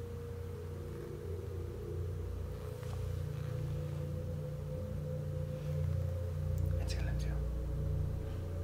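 Hushed room tone picked up by a handheld phone: a steady low rumble and a thin steady hum, with soft whispering.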